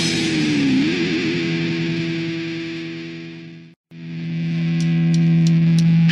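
Crust punk band's distorted electric guitar: the last chord of one song rings out with a wavering pitch and fades to a moment of silence. A new distorted guitar chord then swells in, with four quick high ticks, and the full band starts at the very end.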